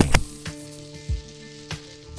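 Soundtrack music: a held synthesizer chord of several steady tones over a faint hiss, with a sharp click right at the start and a few softer clicks.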